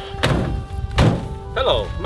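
Two cab doors of a STAR 200 truck slammed shut one after the other, about three quarters of a second apart, each a heavy metal thunk.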